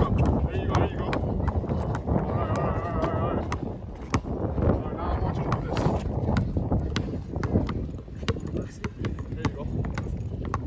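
A basketball dribbled hard on brick paving: a quick, uneven run of bounces. Faint voices sound under the bounces.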